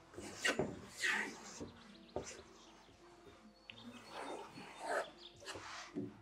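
Soft relaxing background music with birdsong, under faint murmured voices.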